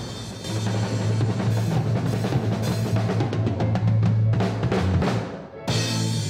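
A young child playing a drum kit: snare and bass-drum hits with cymbal wash, over a sustained low bass note. The playing drops off briefly about five and a half seconds in, then comes back with a cymbal crash.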